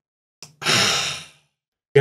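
A man's long sigh: one breathy exhale lasting just under a second, preceded by a small mouth click, as he weighs a hard choice.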